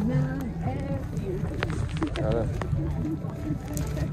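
Indistinct background chatter of several people talking, in short snatches, over a steady low rumble.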